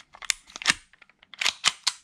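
A run of sharp plastic and metal clicks and clacks from a Tokyo Marui Hi-Capa gas blowback airsoft pistol as its slide is handled and seated on the frame, with several clicks close together in the second half.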